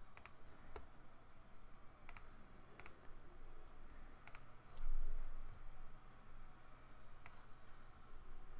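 Computer mouse clicking: about six sharp single clicks, spaced irregularly, over a faint steady low hum. About five seconds in there is a dull low bump, the loudest sound.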